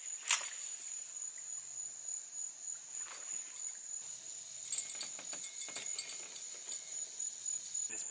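Evening insect chorus, a steady high-pitched trill of crickets, with a few sharp clicks from a fishing rod and reel as a line is cast: one just after the start and a cluster about five seconds in.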